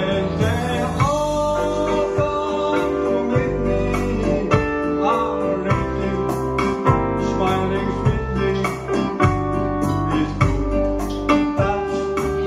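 Yamaha arranger keyboard playing a ballad accompaniment with a steady auto-accompaniment beat and bass line, and a man singing the melody into a microphone over it.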